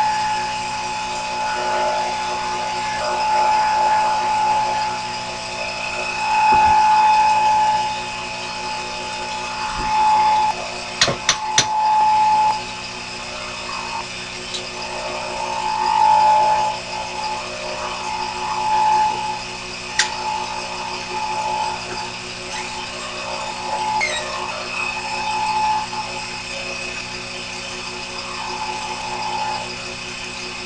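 Small bench lathe running steadily, its motor and spindle giving a constant whine, with a higher tone that swells and fades again and again. A few sharp clicks come about eleven seconds in and once around twenty seconds.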